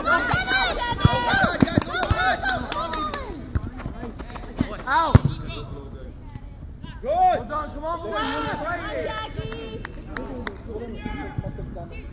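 Soccer ball being kicked in play, several sharp thuds with the loudest about five seconds in, among players shouting to each other across the field.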